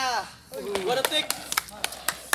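People's voices talking in the open, with a string of sharp, irregular clicks or knocks in the second half.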